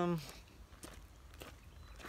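Footsteps of a person walking, soft steps about every half second.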